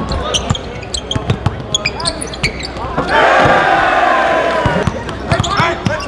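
Live basketball game sound on a gym court: the ball bouncing and sharp shoe squeaks in the first three seconds. Crowd yelling swells about three seconds in and lasts a couple of seconds.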